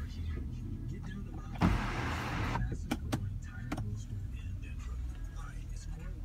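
Power sunroof of a 2016 Mitsubishi Outlander running over a steady low hum. A short whooshing burst comes about a second and a half in, followed by a few sharp clicks.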